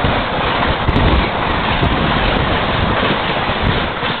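The coaches of an express train rushing past at speed on the neighbouring track, heard from the open door of another moving train: a loud, steady rush of wheels on rail and air, with a few brief clicks, and wind buffeting the microphone.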